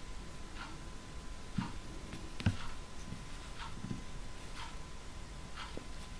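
Faint, regular ticking about once a second over a thin, steady high tone, with a few soft low knocks, the loudest about halfway through.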